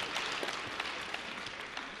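Audience applause in a lecture hall, a dense patter of many hands clapping that slowly dies away.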